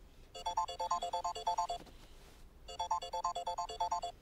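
Mobile phone ringtone for an incoming call: a short melody of quick electronic notes, played twice with a brief gap between.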